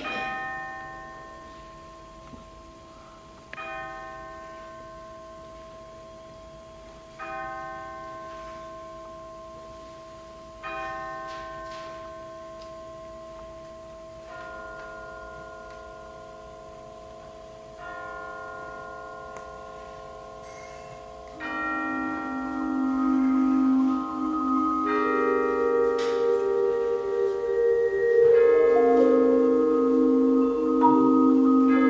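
Percussion ensemble playing bell-like struck chords on mallet percussion, each chord left to ring out for about three and a half seconds before the next. About two-thirds of the way through, louder sustained chords join in and the sound thickens.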